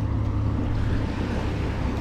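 Steady low engine drone of a large cargo ship passing close by on the river, with water washing against the bank.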